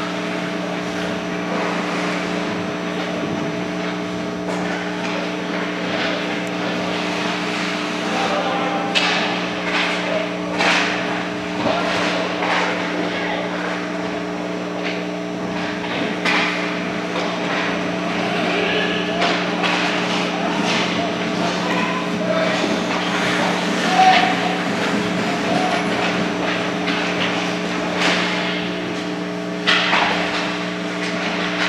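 Ice hockey play heard in a rink: sharp knocks and clacks of sticks, puck and boards, with short shouts from players, over a steady hum.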